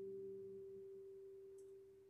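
The final note of an acoustic guitar ringing out alone, one steady tone fading slowly away as the song ends.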